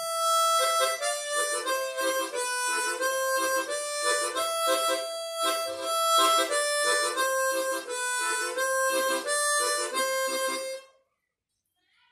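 Chromatic harmonica playing a melodic interlude phrase with tongue slapping: the tongue strikes the mouthpiece in a steady rhythm, so a chordal pattern sounds under the melody notes. The playing stops about eleven seconds in.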